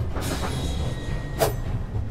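Staged fight sound effects over a steady low rumble: a swish early on, then a single sharp punch-like hit about a second and a half in.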